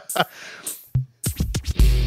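Laughter trailing off, then about a second in a quick run of record-scratch sound effects that leads into loud music with a heavy, steady bass line near the end: a music sting between segments.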